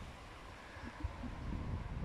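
Quiet outdoor background with a low rumble of wind on the microphone and no distinct events.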